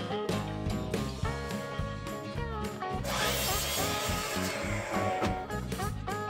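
Background music with gliding notes throughout. About three seconds in, a sliding miter saw cuts through a pine board for about two seconds, its noise rising over the music and then dying away.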